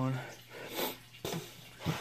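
A word trails off, then a short breath drawn in through a stuffy, allergy-blocked nose, followed by two light clicks.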